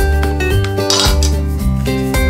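Wooden chopsticks set down across the rim of a stainless steel pot: one brief clink about a second in, over background music.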